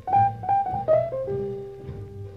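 Swing-era jazz piano playing a slow blues phrase: three or four quick struck notes, then one held note over a bass line.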